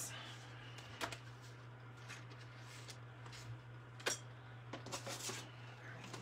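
Paper and craft supplies being shuffled and set down on a desk: light rustling, with a sharper tap about a second in and another about four seconds in, over a steady low hum.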